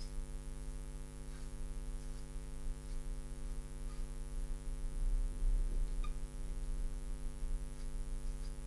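Steady electrical mains hum with many evenly spaced overtones, with a few faint marker strokes on the glass board.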